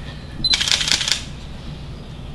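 A digital camera's short, high focus beep about half a second in, followed at once by about half a second of clicking shutter and handling noise.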